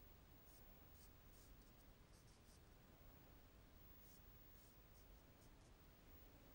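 Near silence with faint, short scratchy strokes of a small brush laying thick, nearly dry paint onto paper, several in a row in two groups.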